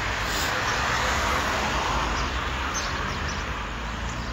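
Street traffic noise: a car passing by, swelling about a second in and fading away, over a steady low rumble.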